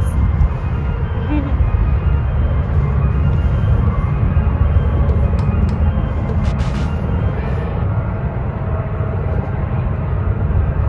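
Steady, irregular low rumble of wind buffeting the microphone, with a few faint clicks about six and a half seconds in.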